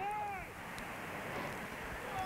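Faint pitch-side ambience during a break in the commentary: a low, steady hiss with faint distant voices.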